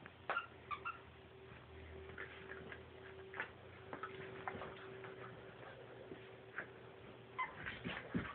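Two pit bull puppies play-fighting over a toy: faint, scattered short squeaks and whines, with light clicks and rustling from their scuffle.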